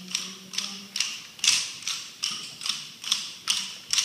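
A group striking pairs of wooden rhythm sticks together, a steady beat of sharp clacks about two to three times a second.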